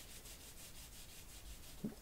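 Faint rubbing and handling of a small calfskin leather cardholder in the hands, a soft scratchy friction sound.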